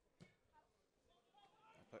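Near silence: faint distant voices and one faint knock near the start.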